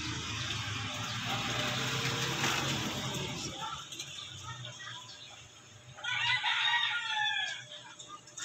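An animal call about six seconds in, drawn out for over a second with several falling tones. It follows a few seconds of steady, noisy background hum.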